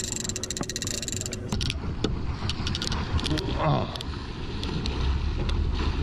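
A big-game conventional fishing reel being cranked, with fast steady clicking for the first second or so. Then wind on the microphone and water splashing at the boat's side as a hooked fish is brought in, with scattered sharp clicks.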